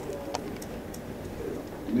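A pause in a man's speech into a table microphone: quiet room tone with a few faint clicks, then a soft low hum of his voice near the end as he starts speaking again.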